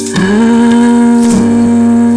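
Song: a single long vocal note slides up into pitch just after the start and is then held steady over the backing.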